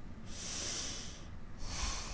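Two long, breathy, hissing exhales, one after the other, like a reluctant sigh.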